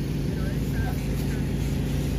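A steady engine drone holding one unchanging low pitch, with faint voices in the background.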